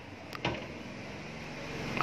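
Low, steady background hum that rises slightly toward the end, with one short click about a third of a second in.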